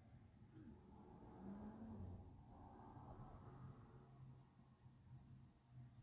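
Near silence: room tone with a faint low hum.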